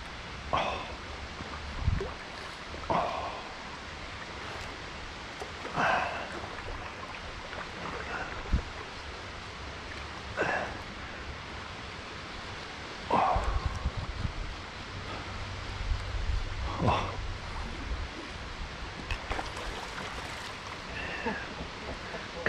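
Steady rush of river water, broken by about eight brief, sharp sounds a few seconds apart, with low rumbles in places.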